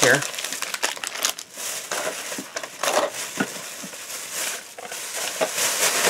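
Thin plastic shopping bag rustling and crinkling in irregular bursts as items are pulled out of it by hand.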